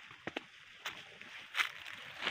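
Quiet rustling with a few short crackles as someone moves in among coffee bushes, stepping on leaf litter and handling the leafy branches.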